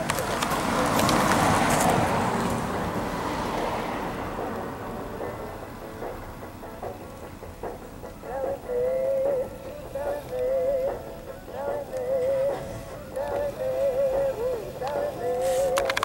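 A vehicle passes, its noise rising and fading over the first few seconds. From about halfway on, a voice sings a wavering tune in short phrases.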